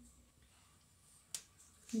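Quiet room tone with a single sharp click about a second and a half in, then a voice starting right at the end.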